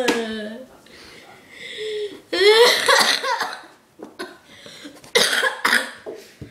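A child's voice crying: a wavering wail about two seconds in, then short coughing sobs near the end.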